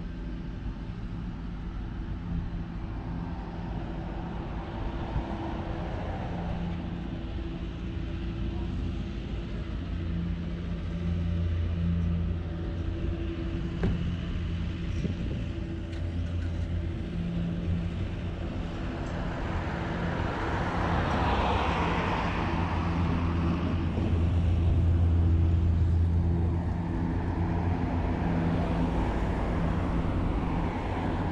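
Road traffic: a steady low engine hum with cars passing, loudest about two-thirds of the way through.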